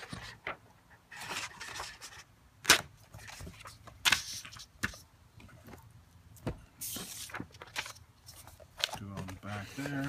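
Hands handling sketchbook paper and a cardboard marker box: scattered rustles, scrapes and knocks with quiet gaps between them, the loudest a sharp knock a little under three seconds in.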